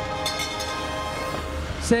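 A metal bell on a frame ringing on after being struck for the win, its tones held steady, with a couple of light strikes near the start.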